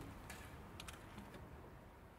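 The last ring of an acoustic guitar chord dies out at the start, followed by a few faint clicks and taps as the guitar is handled and set upright.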